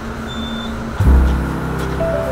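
Steady hum inside an elevator car, with a faint steady tone over it; about a second in, background music cuts in abruptly and takes over.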